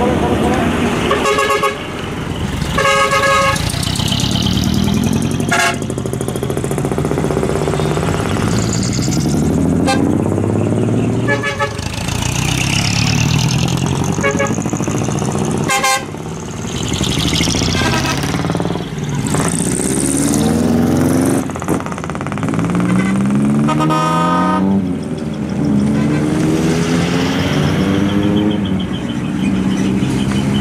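Decorated trucks driving out one after another, their engines revving up in rising pulls, with short horn toots sounding repeatedly throughout.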